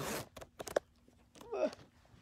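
Zipper of a fabric zip pouch being pulled open: a short rasp at the start, then a few small clicks and rustles as the pouch is handled.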